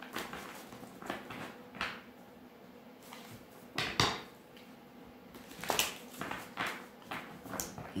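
Tarot deck being shuffled by hand: a series of soft card snaps and slaps, the sharpest about four seconds in, with faint rustling between.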